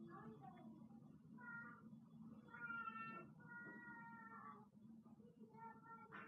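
Four faint, high-pitched, drawn-out voice notes, the longest about a second, over a low steady room hum.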